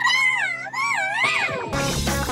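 A cartoon character's wordless, warbling vocal cry, its pitch swinging up and down for about a second and a half over a soft held music tone. Near the end, an upbeat electric-guitar and drum music cue starts.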